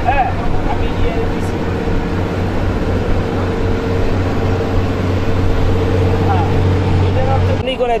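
Passenger river launch's engine running with a steady low hum, with faint voices from people aboard; the hum cuts off suddenly near the end.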